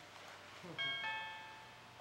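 A two-note chime, a higher note then a lower one a moment later, that starts a little under halfway in and rings out within about a second.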